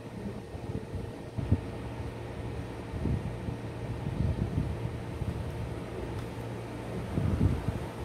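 Steady low hum of a mechanical fan in the room, with a sharp low knock about one and a half seconds in and a few softer low bumps later.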